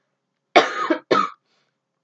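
A young woman coughing twice, a longer cough about half a second in followed straight away by a shorter one; she is ill, coughing up phlegm and losing her voice.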